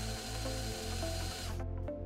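De Soutter MCI-270 pencil grip handpiece with its angled wire driver running a K-wire in forward: a steady high whine that cuts off about one and a half seconds in, over background music.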